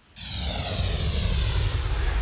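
A TV news transition sound effect: a sudden loud whoosh with a deep rumble underneath and a high sweep falling in pitch.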